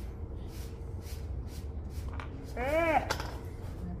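A woman's short wordless vocal exclamation, rising then falling in pitch, about three quarters of the way through, over a steady low room hum.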